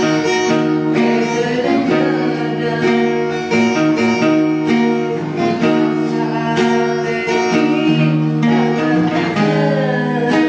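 A band playing a song, with plucked guitar over steady sustained chords.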